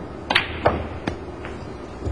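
Snooker cue striking the cue ball, then a sharp click as the cue ball hits the black, which is potted. Two fainter knocks follow as the balls run on into the cushion and pocket.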